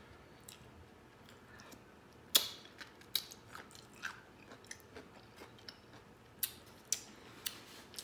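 A crisp bite into a kosher dill pickle spear about two and a half seconds in, the loudest sound, followed by close-up chewing with a string of sharp crunches.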